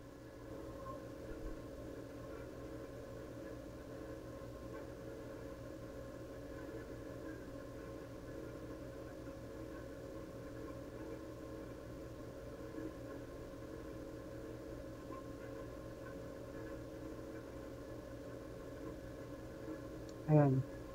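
Steady low background hum of a quiet room, with a couple of faint clicks.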